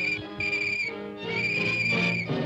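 Police whistle blown in three blasts on one steady high note, the last the longest, over orchestral film music.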